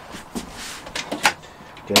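Several light clicks and knocks with a brief scraping rustle about a third of the way in: small objects being handled and moved about at a workbench.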